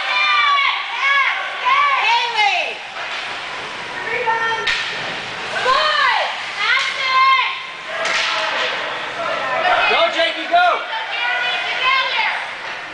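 Rink spectators shouting and cheering over each other in high-pitched, rising-and-falling yells, with two sharp knocks, one a little under five seconds in and another about eight seconds in.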